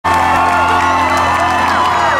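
A live rock band holds a steady sustained chord through the venue's PA while the crowd cheers, with many high whoops gliding up and down over it.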